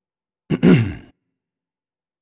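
A man's brief sigh, about half a second in, starting with a small click and falling in pitch.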